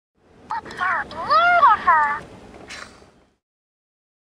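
A high-pitched wordless vocal call whose pitch rises and falls over about two seconds, followed by a short hiss.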